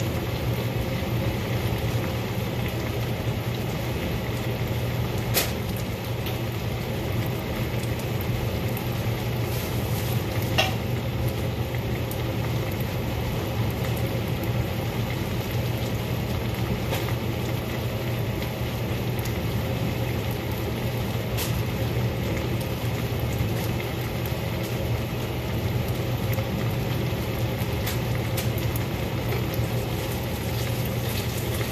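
Vegetables frying in a pan on a gas stove: a steady sizzle over a constant low hum, with a few faint clicks.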